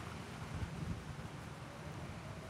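Steady, low outdoor background noise with wind on the microphone.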